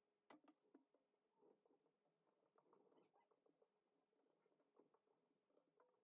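Near silence with faint scattered rustles and light taps of hands laying out cotton embroidery floss strands on paper, the loudest tap about a third of a second in.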